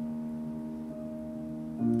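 Live accompaniment between sung lines: a held chord of several steady notes rings on and slowly fades, and a new chord with a lower bass note comes in just before the end.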